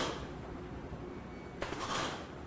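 Faucet life-test rig running: water pouring steadily from rows of kitchen faucets into a stainless steel trough, with a short sharp burst of noise near the start and again near the end as the rig cycles the faucet valves on and off in a 100,000-cycle endurance test.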